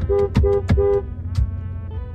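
A car horn honks four times in quick succession during the first second, over a steady low rumble of engines.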